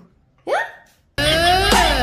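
A short rising whoop, then a spliced-in comic sound effect about a second long, made of several sliding pitches that rise and then fall, which starts and cuts off abruptly.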